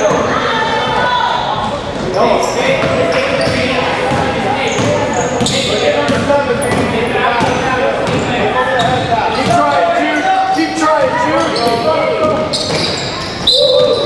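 Basketball dribbled on a hardwood gym floor during a game, with repeated bounces and the voices of players and spectators echoing in the gym.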